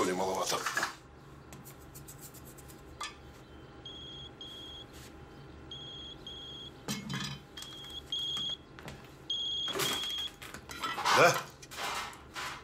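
Mobile phone ringing: four pairs of short, high electronic beeps, repeating about every second and a half from about four seconds in.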